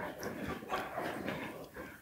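Quiet room noise in a large hall, with a few faint rustles and small clicks.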